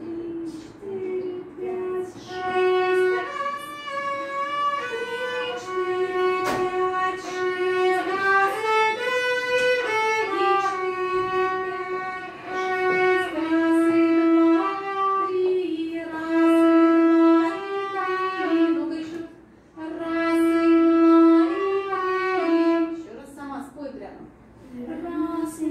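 A violin playing a slow, smooth melody of long held notes, one flowing into the next, with a short break between phrases about three quarters of the way through.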